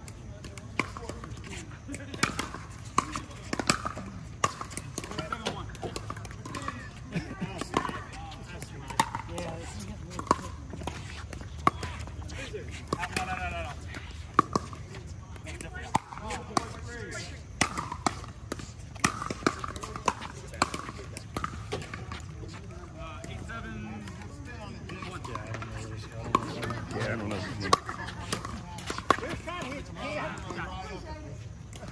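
Pickleball play: hard paddles striking a plastic pickleball, dozens of sharp pocks at an uneven pace, some loud and some fainter, with indistinct voices of players.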